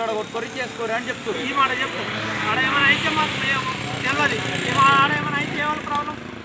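A man speaking while a motor vehicle passes in the background; its engine and road noise swell and fade over a few seconds.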